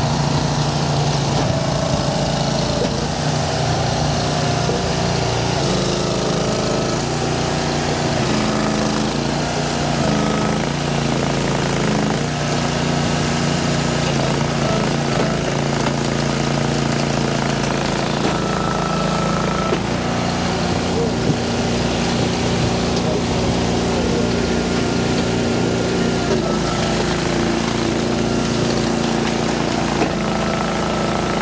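Engine of a hydraulic log splitter running steadily as the machine splits rounds, its pitch shifting now and then.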